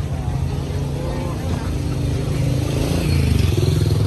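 Street traffic with motorcycle engines running close by, growing louder near the end as one passes, with voices in the background.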